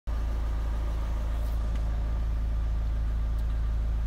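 Renault Scenic II's 1.9 dCi (F9Q804) four-cylinder common-rail turbodiesel idling steadily, heard from inside the cabin.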